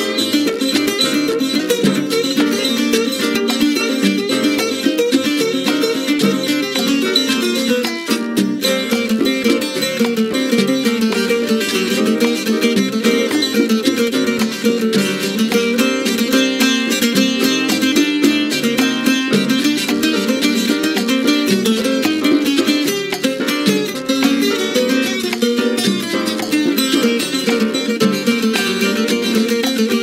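Tres solo: fast plucked melodic runs on the tres over the band's percussion, which keeps a steady beat.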